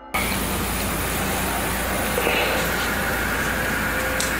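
A steady, unbroken grinding noise of unknown origin in a house room, with faint thin whines over it that change about halfway through.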